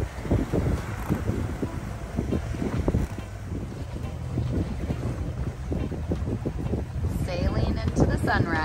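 Wind buffeting the microphone on a sailboat under way: a steady low rumble broken by irregular thumps, with a voice-like sound coming in near the end.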